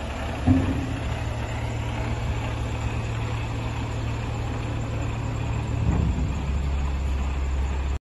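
Mercedes Actros 3240 tipper lorry's diesel engine running steadily while the steel tipper body lowers onto the chassis, with a thump about half a second in. Around six seconds in the engine note drops lower.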